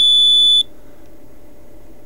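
Buzzer of a homemade Hall-effect magnetic field tester giving one steady, high-pitched beep of just over half a second as a magnet passes over its Hall sensors: the sign that the sensors have picked up the magnet's field.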